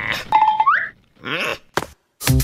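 Short cartoon sound effects: a brief steady tone that slides sharply up in pitch about half a second in, then a shorter pitched sound and a click near the end.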